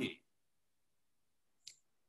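The tail of a spoken word, then silence broken by one short, sharp click about one and a half seconds in.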